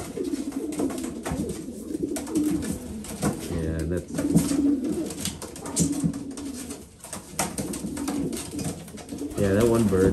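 Homing pigeons cooing, with repeated sharp wing slaps and scuffling as two cocks fight over a nest box in their breeding cages.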